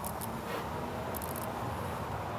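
Workshop ventilation running with a steady rush, with a few faint clicks near the start and a little after a second in.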